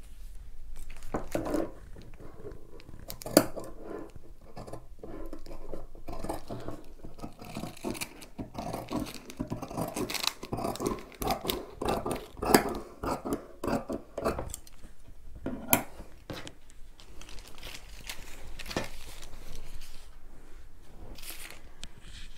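Large dressmaker's shears cutting through knit jersey fabric on a wooden table: a long run of short, irregular snips and blade scrapes, with a few sharper clicks.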